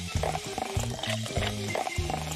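Cola poured from a glass bottle into a glass of ice, splashing and fizzing steadily, over background music with a rhythmic bass line.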